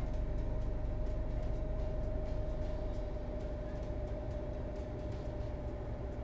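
Steady low background rumble with a faint constant hum, like a running appliance or air handler in the room. A few faint light clicks come from handling the pinned and clipped fabric.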